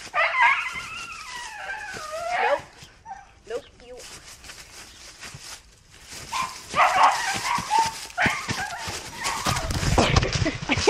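A dog whining and barking in two spells: one at the start lasting about two and a half seconds, and another around seven seconds in.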